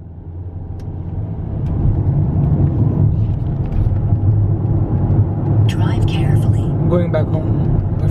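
Car being driven, heard from inside the cabin: a steady low rumble of engine and tyre noise that builds over the first two seconds, then holds.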